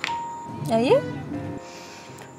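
A bell-like chime in the background music, struck once at the start and ringing on as one steady note for about half a second.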